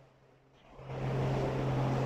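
The sound cuts out for about half a second, then steady outdoor background noise with a faint low hum returns.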